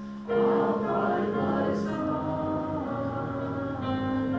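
A group of voices singing a hymn in held notes with keyboard accompaniment; a new phrase comes in loudly about a third of a second in, after a brief break.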